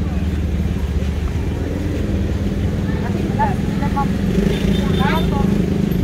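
A steady low drone like a motor running, with brief snatches of nearby voices.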